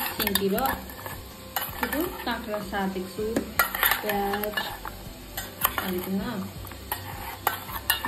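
A metal spoon stirring chopped cucumber and onion in a stainless steel bowl, with repeated clinks and scrapes of spoon against steel.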